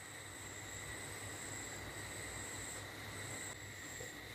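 Faint steady background hiss with thin, steady high-pitched tones: room tone between spoken sentences.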